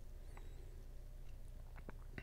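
Quiet room tone with a steady low hum and a few faint, short clicks, two of them close together near the end.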